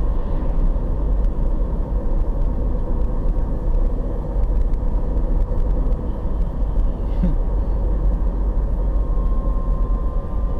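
Steady low rumble of a car driving at road speed, engine and tyre noise heard from inside the cabin, with a faint steady hum over it.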